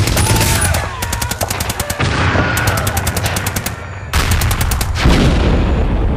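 Battle sound effects: several bursts of rapid machine-gun fire, about ten shots a second, with short gaps between them, over a steady low rumble.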